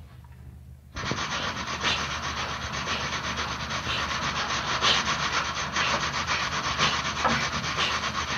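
A steady, loud rushing noise with no pitch that cuts in suddenly about a second in and keeps on evenly.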